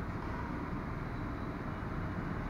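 Steady low background noise of an indoor sports hall, an even rush with no racket or shuttle strikes.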